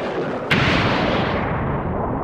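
Intro sound effect: a loud boom-like hit about half a second in, its rumble fading out over the following second.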